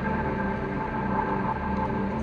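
Ambient improvised music for synth, violin and tape loops: steady held tones over a low drone that swells and fades unevenly.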